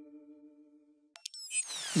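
A held musical tone with overtones fades away in the first second, leaving a moment of near silence. Then a click and an edited transition sound effect of several falling, whistling glides come in near the end.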